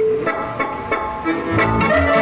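Romanian folk band playing a sârbă, a violin leading the tune over accordion accompaniment. The music comes in suddenly, and a pulsing bass beat joins about a second and a half in.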